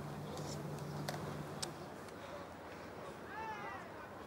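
One short, high-pitched call near the end, rising then falling in pitch, over faint background ambience with a low steady hum in the first second and a half. It is most likely an animal's cry.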